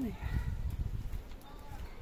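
Footsteps of a person walking on a concrete path, heard as uneven low thuds with rumbling handling noise from the phone being carried.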